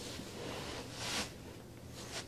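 Soft rustling of clothing and body movement as a man gets down onto a carpeted floor into push-up position, louder for a moment about a second in.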